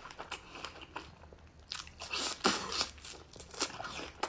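Close-miked chewing of a fresh strawberry: irregular wet mouth clicks and bites, louder and denser in the second half.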